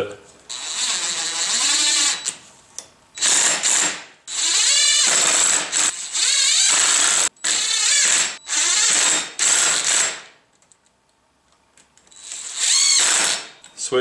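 Cordless impact driver hammering the small brake-rotor bolts down onto the differential boss. It comes in a series of rattling bursts, some short and one about three seconds long, with a pause near the end before a last burst.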